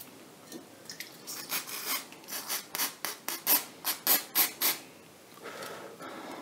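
Quick, rhythmic rubbing strokes by hand, about four a second. They start about a second in and stop near the five-second mark.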